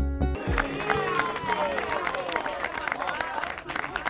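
Backing music with a steady beat stops abruptly just after the start, followed by a small group clapping and cheering.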